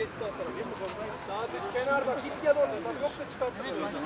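Several men talking at once in the background, with no clear words: chatter among people standing on an outdoor football pitch.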